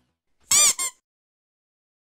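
A short, high-pitched squeak in two quick parts about half a second in, its pitch arching up and then down, set in otherwise dead silence.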